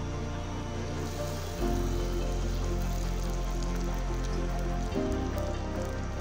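Small puri of golgappa dough deep-frying in hot oil, a steady fine sizzle and crackle. Soft ambient piano music with sustained chords plays over it, changing chord twice.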